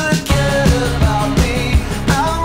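Rock song from a studio recording: drums keep a steady beat under bass, guitars and a singing voice.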